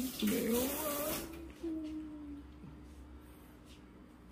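Crackling of the crispy, blistered skin of a freshly roasted lechon pork belly, a dense dry crackle for about the first second that fades as it goes on.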